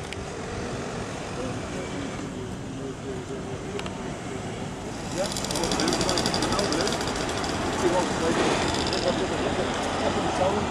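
Outdoor street ambience: indistinct chatter of passers-by, with road traffic getting louder about halfway through.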